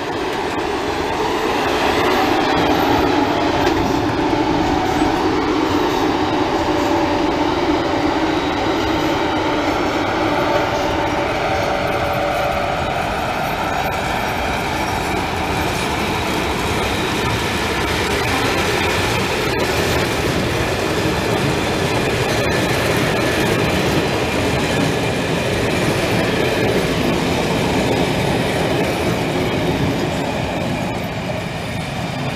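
Locomotive-hauled passenger train departing and rolling past close by: a loud, steady rumble of the coaches' wheels on the rails, with a couple of faint clicks in the second half.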